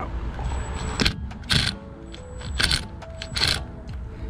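A cordless mini impact driver with a Phillips bit is worked in several short bursts on a rusted brake-rotor retaining screw. It rattles and clicks, with a whine that shifts in pitch, as it breaks the screw loose. The screw head is starting to strip.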